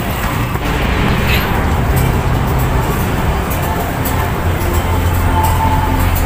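Road traffic beside a street market: a steady wash of noise with a low engine hum that grows stronger over the last second and a half.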